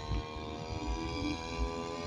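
The single-cylinder two-stroke brush-cutter engine (a 411) of a radio-controlled paramotor runs at a steady throttle in flight, heard from a distance as an even buzzing drone.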